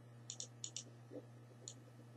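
Faint, sharp clicks: two quick pairs in the first second, then a single click near the end, over a steady low hum.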